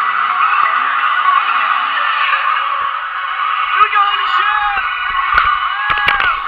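Dense crowd of partygoers talking and shouting all at once, with a few short rising-and-falling whoops in the last two seconds.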